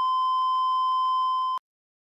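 A steady electronic beep tone near 1 kHz, one unbroken pitch, cutting off abruptly about a second and a half in and followed by dead silence.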